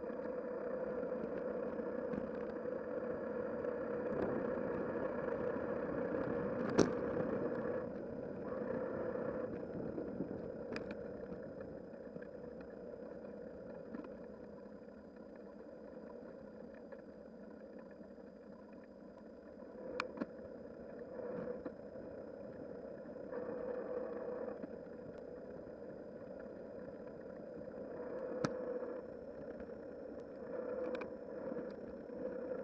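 Wind and tyre noise from a bicycle riding a paved path, picked up by a bike-mounted camera, with a few sharp clicks, the loudest about seven seconds in. It is louder at first, quietens through the middle and swells again near the end.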